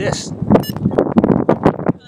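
Mostly a man's voice talking; no steady machine or propeller sound stands out.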